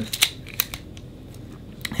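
Canon AE-1 35 mm SLR shutter fired, giving a few sharp mechanical clicks: two close together at the start, one under a second in, one near the end. The shutter makes an annoying squeak, a fault that needs fixing.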